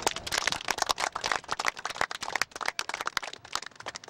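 Microphone handling noise: dense, irregular crackling and rustling clicks as the microphone is fumbled and passed from one hand to another.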